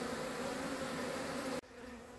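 Honeybees buzzing over the top bars of an open hive, a strong colony of about eight frames of bees. The buzzing is a steady hum that cuts off abruptly about three-quarters of the way through, leaving a much quieter background.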